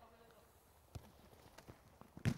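Near silence, with a few faint, short taps about a second in and again near the end, typical of a football being kicked and players running on an indoor artificial pitch.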